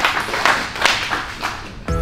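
A small group clapping, the claps irregular and thinning out; background music comes in near the end.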